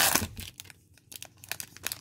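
Foil wrapper of a trading card pack tearing and crinkling as it is pulled open by hand: a loud burst of crackling at the start, then softer scattered crinkles.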